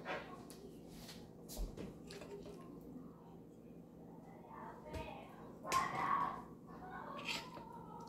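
Faint clicks and clinks of metal tongs against a stainless steel skillet as pieces of stewed chicken are picked up and lifted out. A brief vocal sound comes about three quarters of the way through.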